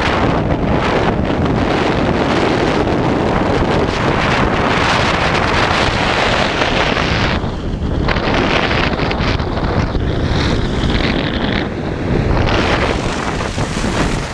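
Loud, steady wind rushing over the microphone of a camera carried by a skier at speed, mixed with the hiss of skis sliding on hard-packed snow; the high end of the rush eases briefly about seven and a half seconds in.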